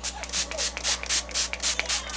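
Pump-action setting-spray mist bottle (Revolution priming water) spritzed onto the face in quick repeated sprays, each a short hiss, about five a second.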